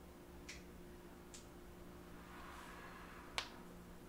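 Quiet room with a steady low electrical hum and a few faint clicks, the sharpest about three and a half seconds in.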